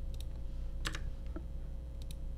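A few computer keyboard key clicks, the loudest about a second in, over a low steady hum.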